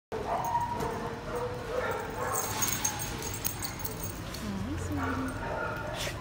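Dogs barking in a shelter kennel area, with a burst of light clicks in the middle and a short low call near the end.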